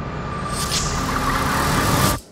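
A trailer sound-design riser: a rush of noise that swells steadily louder over a held high tone, then cuts off abruptly at the very end.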